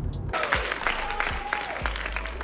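A church congregation applauding, starting abruptly about a third of a second in and cutting off a low car-cabin rumble.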